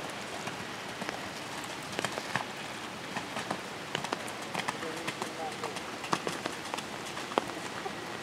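Steady rain, with many scattered sharp ticks of drops striking an umbrella held over the microphone.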